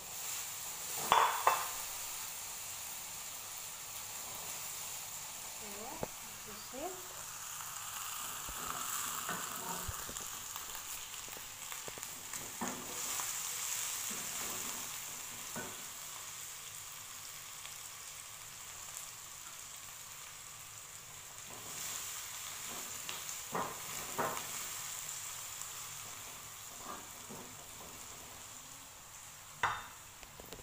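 Chopped red and green bell peppers with garlic and onion sizzling in butter in a frying pan, stirred with a spatula that scrapes and taps against the pan. A couple of sharp knocks about a second in are the loudest sounds.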